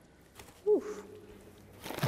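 A person's short hummed 'mm', falling in pitch and then held faintly, over soft rustling as plaster powder is scooped from a paper sack into a plastic tray.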